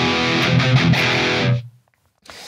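Distorted electric guitar played through the PolyChrome DSP McRocklin Suite's high-gain amp simulation: a lead phrase of held notes, cut off about a second and a half in. The plugin's EQ is switched on, pulling out the lower mids, which without it sound boxy.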